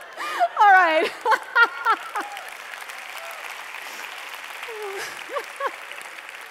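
A woman's loud laughter amplified through a headset microphone: a quick string of rising and falling "ha" bursts in the first two seconds and a few shorter laughs near the end, over a large audience's steady applause and laughter.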